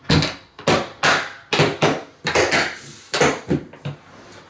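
Large Pelican 1620 hard plastic case being handled: a quick, uneven series of about eight sharp plastic knocks and clacks as its lid and latches are worked and the case is tipped onto its wheels.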